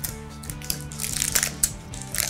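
Springform cake pan being opened and its metal ring eased off the baked cake: a cluster of short scratchy clicks and scrapes in the middle, over steady background music.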